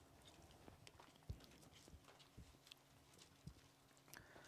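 Near silence: quiet room tone with three faint soft thuds about a second apart.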